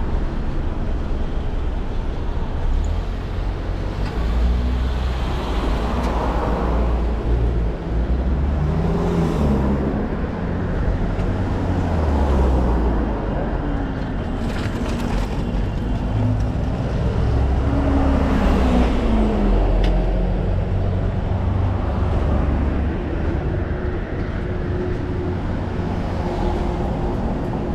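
Road traffic on a busy multi-lane street: several cars pass close by one after another, their engine and tyre noise swelling and fading over a steady low rumble.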